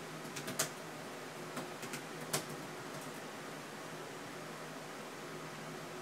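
Steady room noise with a few light clicks in the first couple of seconds, the sharpest about two and a half seconds in.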